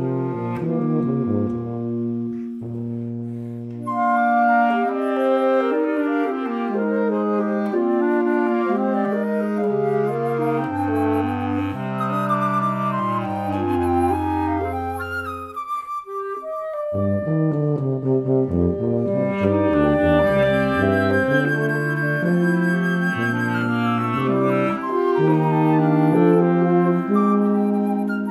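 Small wind ensemble of alto saxophone, clarinet, bass clarinet and tuba playing a contemporary chamber piece in sustained, shifting chords over low tuba notes. The music thins almost to a break about sixteen seconds in, then all parts come back in.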